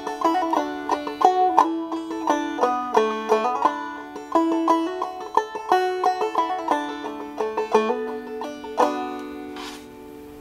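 Open-back banjo played clawhammer (frailing) style: a slow melody in waltz time in double D tuning, plucked notes with brushed strums. The last stroke comes about a second before the end and is left to ring and fade as the tune finishes.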